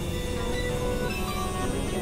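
Experimental electronic synthesizer drone music: a dense, grainy low drone under short held tones at shifting pitches, one of them sustained for about the first second.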